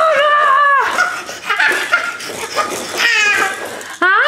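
A toddler laughing and squealing in several high-pitched bursts.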